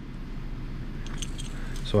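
Oxygen and acetylene gas hissing from the unlit tip of an oxy-acetylene torch after both torch valves are cracked open a little, the hiss growing slightly louder. A few faint metallic clicks come near the end.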